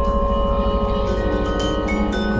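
Vibraphone notes struck with mallets and left ringing, several new notes entering over the first second and a half, over a low pulsing electronic drone.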